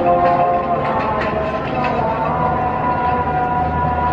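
Passenger train rolling slowly through a station on the loop line, wheels clicking over the track, with a low rumble that grows toward the end. A held tone fades out within the first second.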